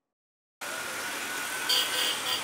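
Silence for about half a second, then street traffic starts up: motorcycle taxis and cars running in a steady wash of engine and road noise. Near the end a high tone begins pulsing a few times a second.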